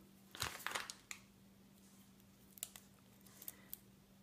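Faint rustling and small clicks of rubber loom bands being pushed down among loose clear plastic C-clips inside a loom-band pot: a cluster within the first second, then a few scattered light ticks near the end.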